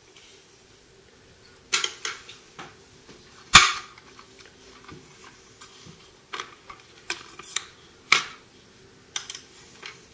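A series of sharp clicks and clacks from a Ruger Mini-14's ATI folding stock being worked at its hinge and locked, with knocks from handling the rifle. The loudest clack comes about three and a half seconds in.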